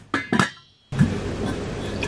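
Stainless steel pot lid clanking twice against the pot, the metal ringing briefly. About a second in, a steady hiss sets in.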